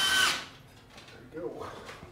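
Cordless drill-driver running at a steady whine as it drives a screw into a wall vent grille. It winds down and stops about half a second in, after which it is nearly quiet.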